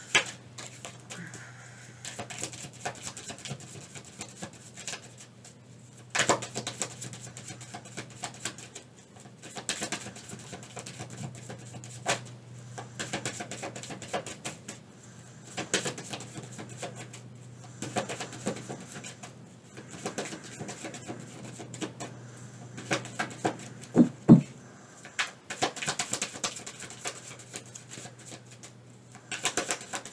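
A tarot deck being shuffled by hand, overhand: an irregular stream of soft slaps, slides and snaps of the cards over a faint steady hum. About three quarters of the way through comes a brief low sound, the loudest in the stretch.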